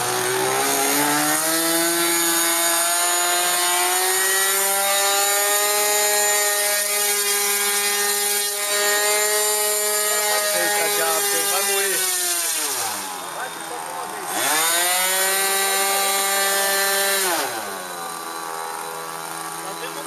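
Methanol-fuelled glow engine of an RC model airplane, held nose-up, revving up to a steady high-pitched full-throttle run. About twelve seconds in it throttles back to a low idle, revs up again a moment later, and drops back to idle near the end.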